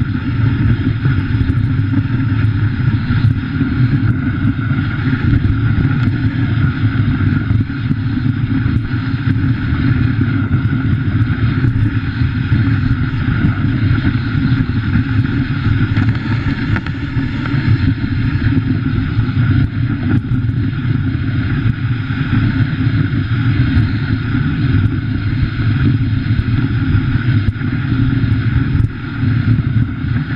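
Steady rumble and hiss of a dog sled's runners sliding over snow, heard through a camera mounted on the moving sled.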